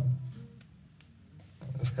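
A short pause in a man's narration: low room tone with two faint brief clicks in the middle. His voice trails off at the start and comes back near the end.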